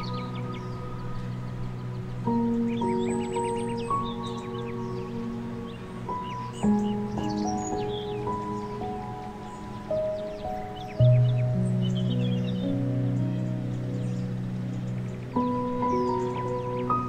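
Calm, new-age style background music of slow, sustained notes and chords, with birdsong chirps mixed in.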